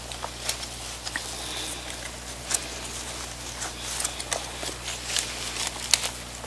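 Hands tucking loose potting soil in around a plant in a plastic nursery pot: scattered soft crackles and rustles of soil being worked.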